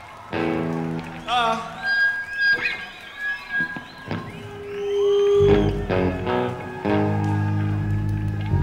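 Rock band noodling between songs: electric guitar chords struck and left ringing, with a held note in the middle and a heavy low bass chord coming in about two-thirds through. High wavering whistles run over the top.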